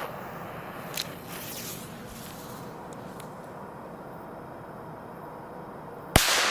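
The fuse of a Keller Pyro Cracker firecracker hissing steadily as it burns down, with a faint click about a second in.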